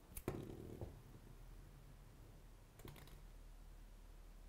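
Near silence with a few faint, light taps on a tabletop, about a third of a second in, just under a second in and near three seconds in, as a small card-and-wooden-skewer spinning top spins on the table.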